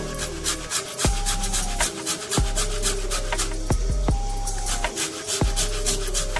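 A hard dried lemon (loomi) rasped on a stainless-steel box grater in quick repeated scraping strokes, over background music.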